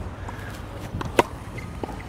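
Low, steady outdoor background rumble with a few short, sharp taps or clicks, the loudest just past a second in.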